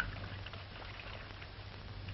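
Faint steady hiss and low hum with light crackle from an early-1930s film soundtrack, with a short click at the very start.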